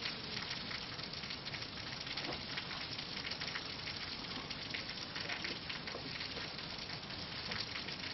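Steady, even hiss of room tone and recording noise, with no speech.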